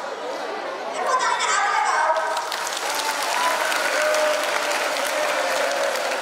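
An audience clapping, building up about a second in and then holding steady, with voices over it.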